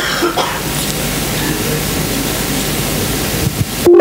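A steady, loud hiss of noise that cuts off suddenly just before the end.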